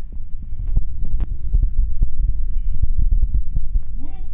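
Close handling noise on the recording microphone: a dense run of low thumps and sharp clicks, louder than the speech around it, as things on the table beside it are moved.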